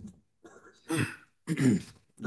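A man clearing his throat twice, briefly, before he starts to speak: once about a second in and again just before the end.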